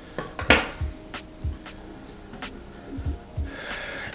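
Scissors, not very sharp, snipping stray threads: a few sharp clicks, the loudest about half a second in, over background music.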